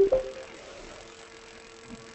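A brief, sharp ratcheting click at the start that dies away within half a second, then a faint, steady hum.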